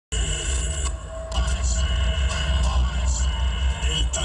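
Music with a heavy, steady bass and long held tones, without a clear beat.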